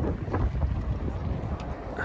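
Wind buffeting the microphone in gusts, a low, uneven rumble.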